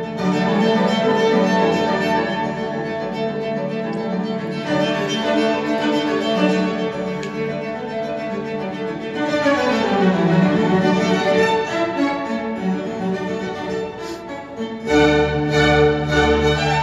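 Bowed-string music, violin and cello, played back through Sonus Faber Aida floorstanding loudspeakers in a listening room. The notes are sustained, with a falling run about ten seconds in and a stronger, deeper entry about a second before the end.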